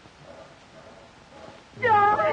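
Faint film-soundtrack background, then near the end a sudden, loud, high-pitched vocal cry with a wavering pitch: an emotional, tearful exclamation rather than words.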